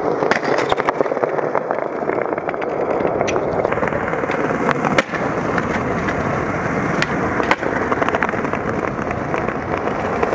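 Skateboard wheels rolling over stone paving tiles in a steady rumble, with several sharp clacks of the wooden board popping and landing, the loudest about halfway through and more near the start and around seven seconds.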